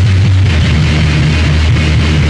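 Harsh noise rock recording: a loud, dense wall of distorted noise over a heavy, steady low drone.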